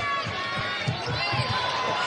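Basketball dribbled on a hardwood court, a run of low thumps several times a second, with sneakers squeaking against the floor over steady arena crowd noise.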